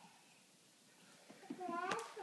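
Quiet room, then near the end a short, high-pitched vocal call that rises in pitch.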